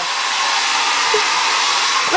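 Handheld hair dryer running steadily, an even, high hiss of blown air.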